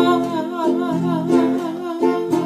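A woman singing in Tongan with a wavering vibrato, accompanied by a strummed ukulele and acoustic guitar.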